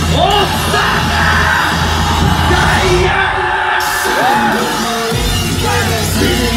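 Live hip-hop concert music over a loud PA, heard from inside the crowd: a heavy bass beat with shouted vocals and crowd yells on top. The bass cuts out for about a second past the middle, then comes back in.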